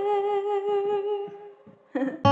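A woman's voice holding one long hummed note with a slight vibrato, unaccompanied, fading out just before the end.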